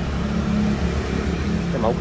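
Honda Vario 125 scooter's single-cylinder engine idling steadily.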